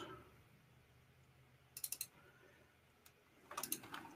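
Faint clicking at a computer: a quick run of four or five clicks about two seconds in, a single click about a second later, and another run of clicks near the end, with quiet in between.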